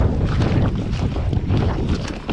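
Mountain bike riding fast down a dirt trail: tyres rumbling over leaf litter and roots, with frequent small knocks and rattles from the bike, and wind buffeting the camera microphone.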